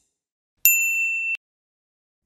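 A single electronic ding, one steady high tone held for under a second and cut off abruptly: the notification-bell sound effect of a subscribe-button animation.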